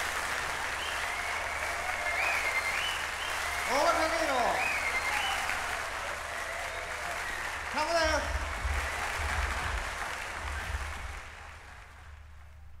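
Audience applauding at the end of a live jazz piano-trio performance, with a few shouted whoops, fading out about a second before the end.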